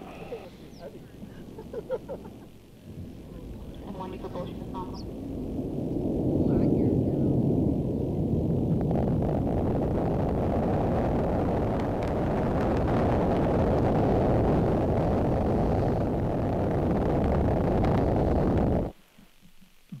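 Rumbling roar of a SpaceX Falcon 9's first-stage engines heard from the ground as the rocket climbs. It builds over the first few seconds, holds steady and loud, then cuts off abruptly about a second before the end.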